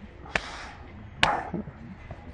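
Two sharp knocks, a little under a second apart, each followed by a brief hiss, over the low background noise of a large indoor space.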